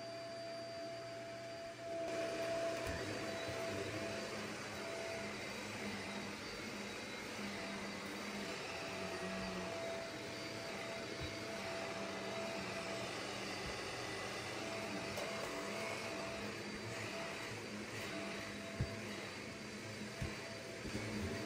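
Corded upright vacuum cleaner running on carpet: a steady rushing motor noise with a held whine, which gets louder about two seconds in and stays even as it is pushed back and forth. A single short knock near the end.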